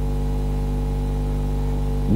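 Steady electrical hum with a buzzy stack of evenly spaced overtones, unchanging in level.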